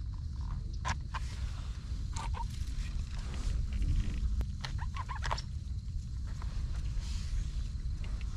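Knife cutting oyster mushrooms off a rotting stump by hand: scattered soft snaps, clicks and rustles as the caps are cut and pulled away, over a steady low rumble.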